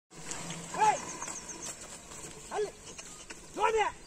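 A man's short, high calls, each rising and falling in pitch, given three times to urge a pair of bullocks on. Faint high chirps sound behind them.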